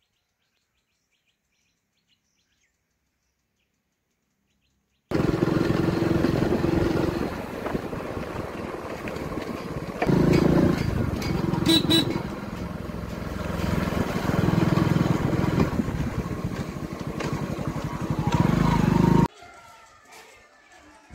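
Motorcycle engine running on the move. It starts abruptly after about five seconds of silence, its note rises and falls a few times, and it cuts off suddenly near the end.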